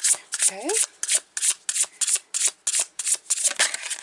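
A deck of oracle cards being shuffled by hand: a quick, even run of short swishes, about five a second.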